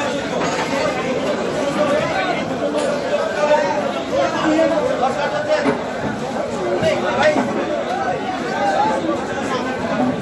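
Many people talking over one another: steady crowd chatter, with a few short knocks among it.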